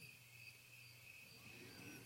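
Near silence: room tone with a faint, steady high-pitched trill that pulses about three times a second, over a low hum.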